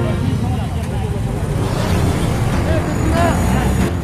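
Street noise at a crowded roadside: several people's voices over a steady low rumble of vehicle engines and traffic.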